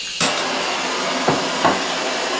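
Butane culinary torch (BBT-1 high-output torch head) with its flame running in a steady loud hiss, which jumps up suddenly just after the start. Two light knocks come about halfway through.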